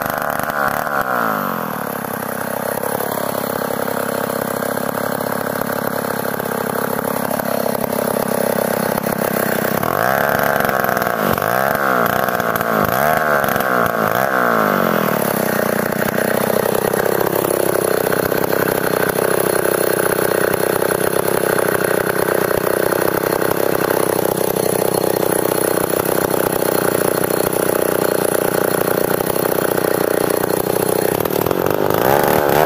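Chinese-made STIHL chainsaw's two-stroke engine dropping to idle and idling, then blipped several times in quick succession, and from about halfway on running steadily at higher, louder revs.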